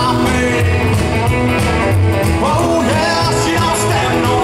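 Live rock and roll band playing: electric guitars, upright double bass and drums, with singing.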